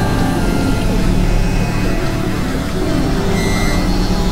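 Experimental electronic drone-and-noise music: dense layered synthesizer tones over a steady low drone, with a higher held tone entering near the end.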